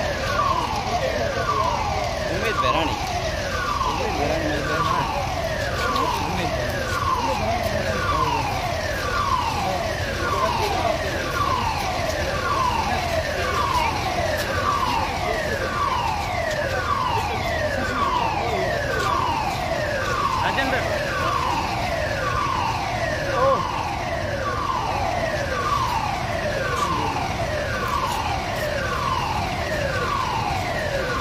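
An emergency siren sounding a falling tone over and over, a little faster than once a second, steady throughout. It is an alarm signalling the chemical-disaster drill at the oil terminal.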